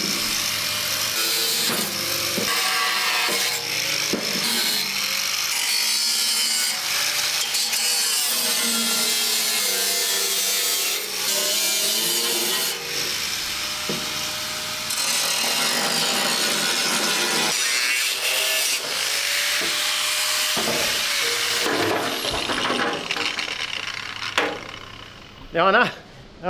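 Handheld electric angle grinder cutting through a thick steel mudguard panel, running steadily under load with a few short dips, and stopping near the end.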